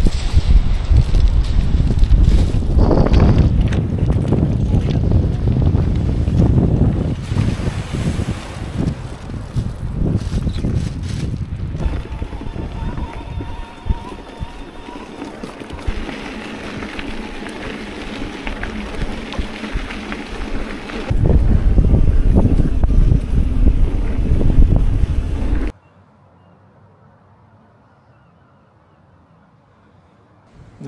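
Wind buffeting the microphone in a low rumble that eases for a stretch midway, rises again, then cuts off suddenly near the end to a faint background.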